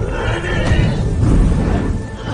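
A monstrous creature's loud, rough roar over a dramatic film score, swelling from about half a second in and easing off near the end.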